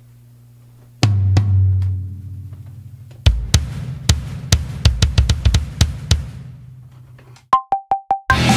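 Electronic drum kit triggering sampled drum sounds over the monitors: a heavy low hit about a second in that rings out, then a run of quick drum hits from about three seconds in. Near the end a metronome count-in of four short beeps, the first one higher.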